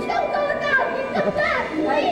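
Several voices calling out over one another, children's voices among them, with a rising shouted call about one and a half seconds in, echoing in a large hall.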